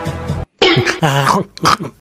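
Background music cuts off a little under half a second in. It is followed by a dubbed comic human voice making coughing and throat-clearing noises in two bursts, a reaction to a sour taste.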